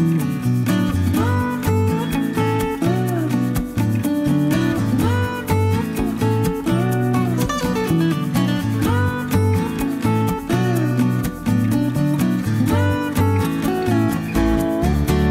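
Background music: an upbeat acoustic guitar piece with steady strumming and a lead melody whose notes slide up and down.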